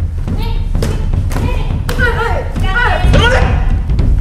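Soft padded practice weapons striking in children's kobudo sparring: several sharp thuds in the first half, then high-pitched shouts.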